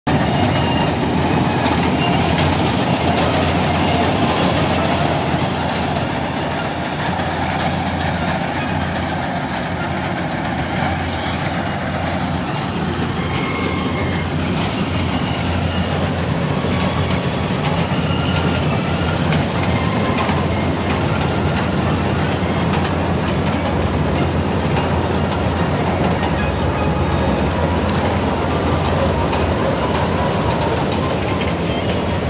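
Malkit 997 combine harvester cutting and threshing wheat: its diesel engine, header and threshing machinery running together in a loud, steady mechanical din.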